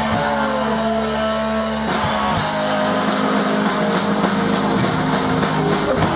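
Hardcore punk band playing live: heavily distorted electric guitars and bass holding loud chords over drums and crashing cymbals, changing chord about two seconds in. The music cuts off at the very end.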